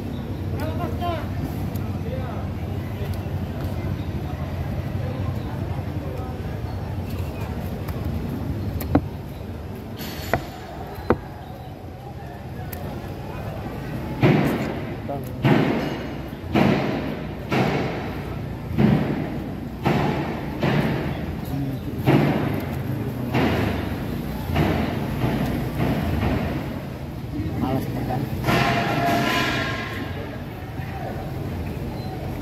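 A heavy cleaver chopping a fresh tuna loin into steaks, each stroke striking through to the wooden chopping block. There are about a dozen chops, roughly one a second, in the second half, over a steady low rumble.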